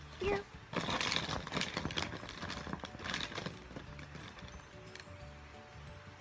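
Plastic felt-tip markers rattling as a hand rummages through a bin of them and draws one out. The rattling is busiest for about three seconds, then dies down to lighter handling, over faint background music.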